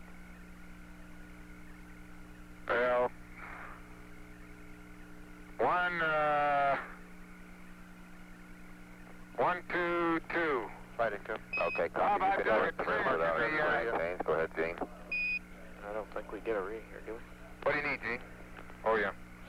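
Apollo air-to-ground radio link: a steady hum and hiss on the line, carrying indistinct radio voices. Twice, a few seconds apart, a short high beep cuts through the voices: Quindar tones keying Mission Control's transmission on and off.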